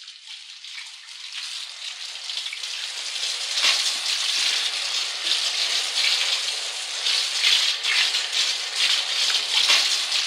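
A steady crackling hiss, like spraying or falling water, fading in from silence over the first three seconds and then holding level, with scattered sharp crackles through it.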